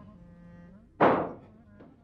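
A single sharp thunk about a second in, dying away within half a second: a glass being set down on a table.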